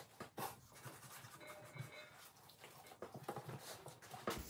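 Faint scraping and slicing of a knife working between raw pork belly meat and its tough skin, with a few soft scrapes and rustles of the meat being handled.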